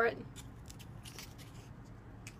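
Faint crinkling and a few light ticks of a small carded package of chalk vinyl tape being handled in the hand.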